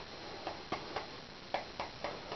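Brush mixing paint on a handheld palette: a few faint, irregularly spaced clicks and taps over quiet room tone.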